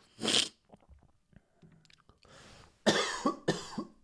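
A man coughing in two bouts: one short cough near the start, then several harsh coughs in quick succession from about two seconds in. The cough comes from his illness after a COVID infection.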